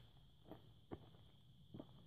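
Near silence broken by a few faint footsteps on dirt, three soft steps spread across two seconds.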